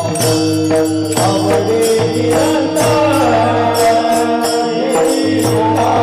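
Devotional kirtan music: small brass hand cymbals (taal) struck in a steady rhythm over a held drone. A voice singing a wavering melody comes in about two seconds in.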